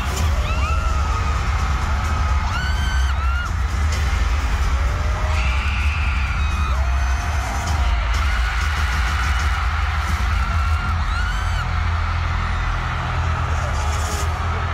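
Loud music over a concert PA with heavy, steady bass, while fans in the audience let out high screams every few seconds.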